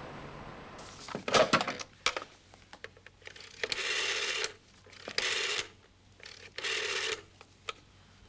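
Rotary telephone: a few sharp clicks of the handset and cradle, then the dial wound and released three times, each digit whirring back for a different length, the first the longest. A busy number is being redialled.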